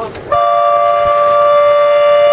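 Race start horn sounding one long, steady blast. It begins about a third of a second in and is still going at the end. This is the signal to start a sailing race.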